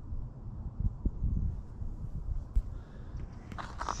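Soft, irregular, muffled thumps of footsteps in snow over a steady low rumble.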